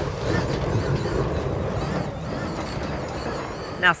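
Extreme E Odyssey 21 electric off-road SUV driving on a dirt track: a steady rumble with gravel and tyre noise, and no engine note.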